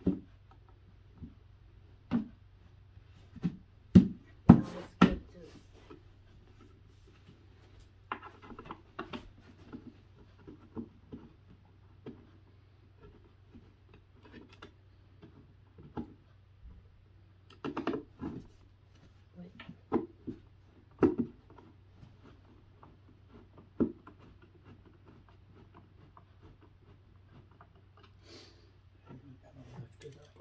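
Irregular knocks and clunks of the wooden panels of a flat-pack cube organizer being handled and fitted together by hand, with a quick run of sharper knocks about four to five seconds in.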